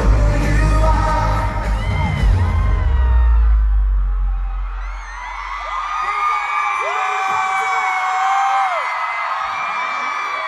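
Live pop concert: loud amplified music with a heavy bass runs for about the first four seconds, then the bass drops out and a large crowd of fans screams and cheers, with many long high-pitched shrieks.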